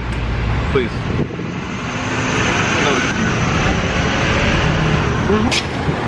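Steady road traffic noise from passing cars, swelling over the middle few seconds.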